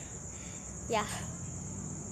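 Steady high-pitched chirring of crickets.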